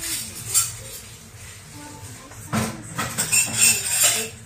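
Plastic Spinosaurus toy figure being handled, with short rustling and clattering noises. The loudest come about two and a half seconds in and near the end.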